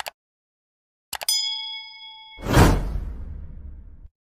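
Sound effects of a subscribe-button animation: a single click, then about a second later two quick clicks and a bright bell ding that rings for about a second, followed by a whoosh that fades away.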